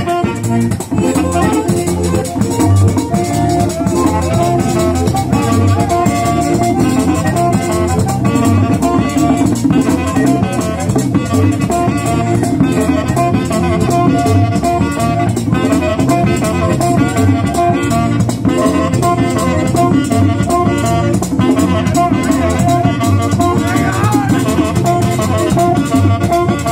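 Live merengue típico band playing: button accordion, tambora drum and saxophone over a steady fast beat.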